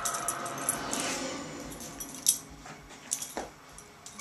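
Dog collar tags jingling and clinking in irregular bursts as a Pembroke Welsh Corgi puppy spins and tugs at a plush toy, with a sharper clink about two seconds in.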